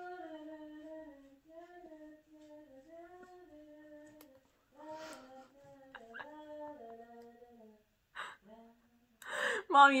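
A woman quietly humming a slow improvised tune, held notes stepping up and down in short phrases, as background music. Near the end it gives way to a louder burst of close laughter and speech.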